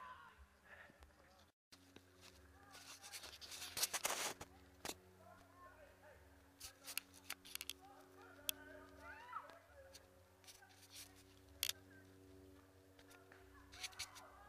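Footsteps crunching on a gravel and dirt trail, picked up by a camera worn on the runner. There is a dense run of crunching clicks about three to four seconds in, then scattered clicks, with faint voices in the distance.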